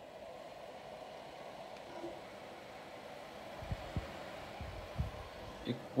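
Dyson AM06 bladeless desk fan and Status 14-inch tower fan running together on low speed without oscillation: a faint, steady airflow hiss. A few low thumps on the microphone come about two-thirds of the way in.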